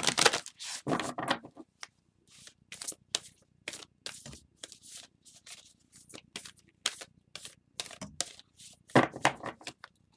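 A deck of tarot cards being shuffled by hand: a long run of short card flicks and slaps, loudest in the first second or so and again near the end.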